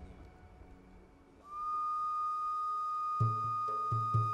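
A traditional Malay ensemble starts a piece: a wind instrument holds one long, steady high note, and a frame drum joins with a few deep strikes near the end. Before the note comes in there is only a low background rumble.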